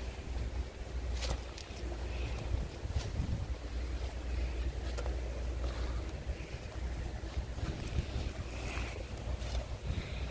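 Wind rumbling on a phone microphone outdoors, a steady low buffeting, with a few light clicks along the way.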